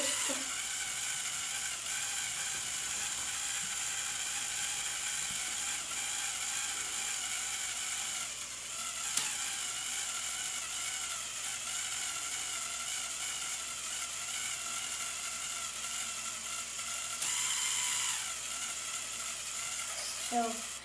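The built-in electric motor and plastic gear train of a Lepin 20005 Mobile Crane MK II brick model whirring steadily as they drive the outriggers out.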